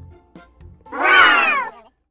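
A single loud meow-like call, about a second long and falling in pitch, used as a transition sound effect over soft background music.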